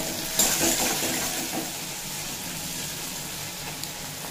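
Sliced onions and tomatoes sizzling in hot oil in a metal kadai as a spatula turns them: a steady frying hiss, while the tomatoes are cooked down until soft.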